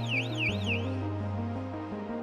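Electronic alarm sounder on a transformer oil purification plant, warbling up and down about three times a second and stopping about a second in; it signals a motor protection switch alarm. Background music plays under it.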